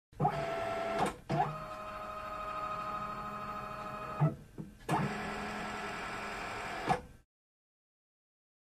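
Electronic intro sting of steady, sustained synthesized tones in three sections, each opening with a short upward glide and closed by a click-like break; the tone cuts off abruptly about seven seconds in.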